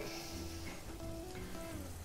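Quiet background music with a few held notes, over a faint sizzle of vegetables frying in oil in a pan.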